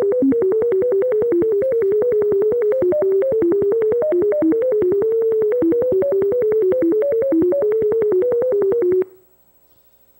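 A computer-generated melody of pure sine tones, about five short notes a second, wandering in pitch within a narrow middle range with a click at each note change; each note's pitch renders the spacing between successive eigenangles of circular symplectic ensemble (CSE) random matrices, so the tune carries the spacing distribution and the correlations between neighbouring spacings. It stops about nine seconds in.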